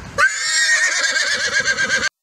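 A horse whinny laid over an intro logo as a sound effect: one long, quavering call.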